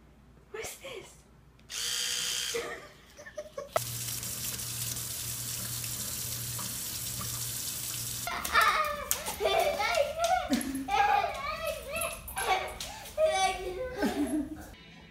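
Water running from a faucet into a sink, a steady hiss for about four and a half seconds that stops suddenly. Before it, an electric toothbrush buzzes for about a second; after it come voices and laughter.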